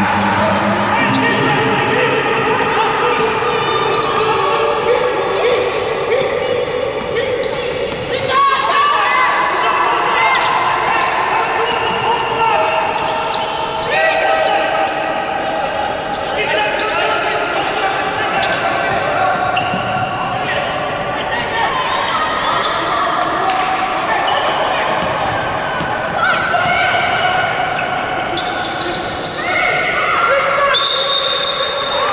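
Basketball being dribbled on a hardwood court, with players' and coaches' voices in a large, near-empty arena.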